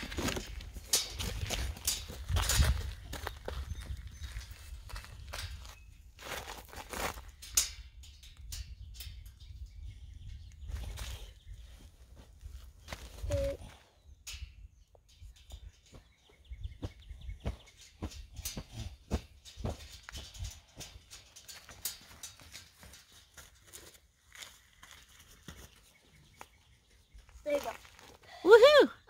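Scattered light metal clicks and knocks as a bolt and nut are fitted and tightened at the joint of a steel garden-arbor arch, with low wind noise on the microphone.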